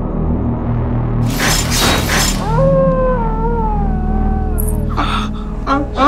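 Eerie suspense score with a steady low drone. About a second and a half in, a sharp whooshing burst sounds, followed by a long, wavering wail that slides down in pitch for about two seconds. Short sharp hits come near the end.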